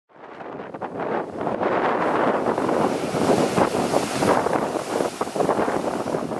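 Heavy sea surf breaking and surging against a rocky shore, with wind buffeting the microphone. The sound fades in over the first second.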